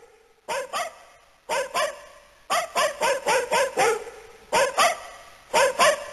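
A dog barking repeatedly, in short pairs and one quick run of about six barks, each group trailing off in an echoing tail.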